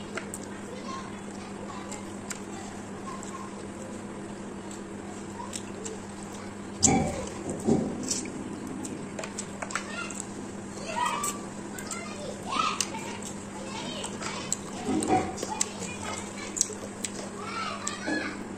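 Background voices, children's among them, calling out now and then over a steady low hum, with a louder call about seven seconds in.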